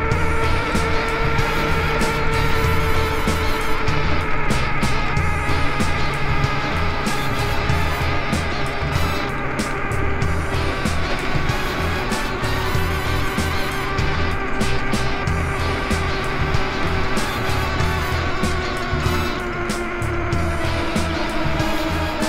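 Electric motor of a high-speed mobility scooter running at speed, a steady whine whose pitch sinks slowly as the scooter slows on an uphill grade, over rumble from the tyres on smooth pavement and wind.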